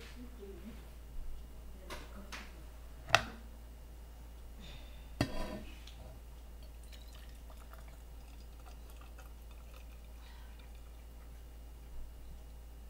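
Kitchen handling noises around a stainless steel kettle: a few short clicks and knocks, the sharpest about three seconds in and another about five seconds in with a short ring after it, then only faint small ticks.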